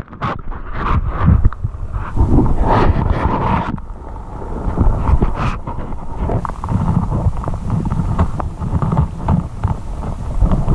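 Splashing as an action camera is lowered into a shallow creek, then muffled underwater sloshing, knocks and rumble from hands moving in the water around it. The sound turns dull and low about four seconds in, once the camera is fully submerged.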